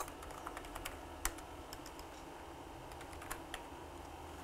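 Faint keystrokes on a computer keyboard: a scattered handful of light clicks, with one sharper tap a little over a second in.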